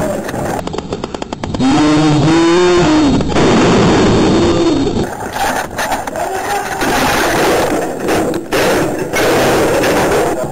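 Men's raised, shouting voices over noisy camera audio, with a quick rattling run of clicks about a second in and a few sharp knocks or cracks near the end.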